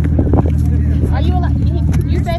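Steady low hum of a tour boat's engine idling, with people's voices over it.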